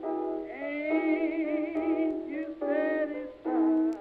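A woman singing held notes with a wide vibrato over piano accompaniment, in an early jazz or blues song.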